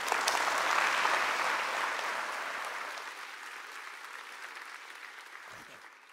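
Audience applauding at the end of a talk, loudest about a second in and then fading away gradually.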